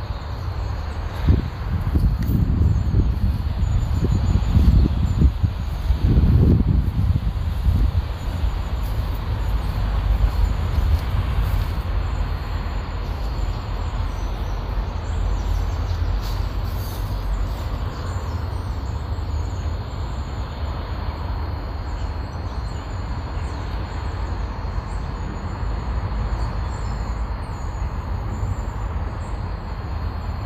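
Wind rumbling on the microphone, gusting harder through the first several seconds, with faint bird chirps high above it.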